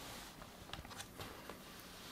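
Faint handling noise: a few light taps and a soft rustle as hands settle an upside-down laptop on a cloth towel.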